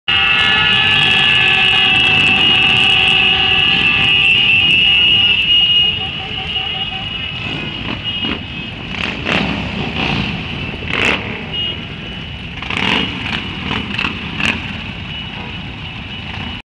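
A mass of motorcycles running together with a low engine rumble. For the first six seconds many horns sound together as a steady chord, then the level drops and there are several short, sharp horn toots.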